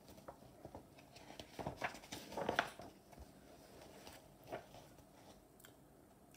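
Page of a paper picture book being turned by hand: a few soft paper rustles and light handling clicks, loudest about two to two and a half seconds in, with a smaller rustle near the end.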